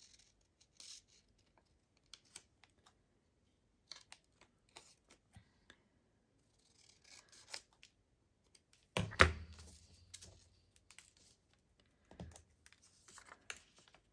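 Scissors snipping paper in short, scattered cuts as a small paper piece is trimmed. A single louder thump comes about nine seconds in.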